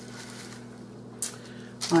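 A brief crinkling rustle of a wax paper sheet being picked up, about a second in, over a faint steady hum. A voice starts right at the end.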